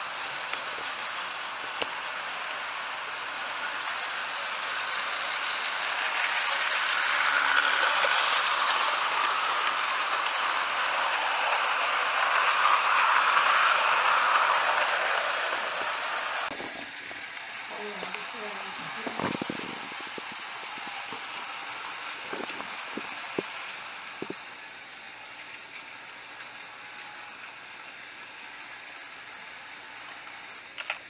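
OO gauge model train running on sectional track: a steady rolling rumble and motor whir that swells and fades, then drops to a quieter level about halfway through, with a few light clicks.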